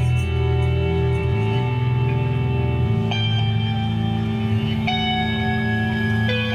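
Live instrumental band: an electric bass guitar holding low notes under an electric guitar's long sustained chords, the notes changing every second or two in a slow, ambient passage.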